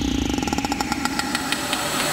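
Electronic logo-intro sound effect: a dense, buzzing riser with a rapid, regular stuttering pulse, swelling near the end toward a heavy hit.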